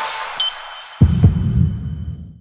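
Heartbeat sound effect: a deep double thump, lub-dub, about a second in, running on as a low throb that fades. Just before it, a high ringing chime sets in as the song trails off.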